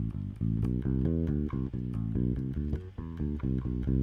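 Spector electric bass guitar played fingerstyle: a steady run of single notes, about four a second, a scale-like practice phrase played up the neck, with a brief gap near three seconds in.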